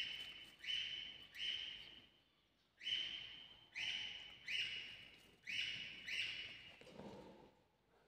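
Faint, short hissing 'psst' calls, about nine of them roughly a second apart with a short pause near the middle, a person's coaxing sounds to draw a rabbit in.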